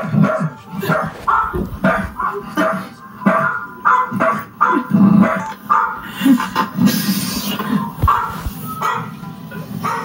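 A dog barking repeatedly in short barks, about one or two a second, with music underneath.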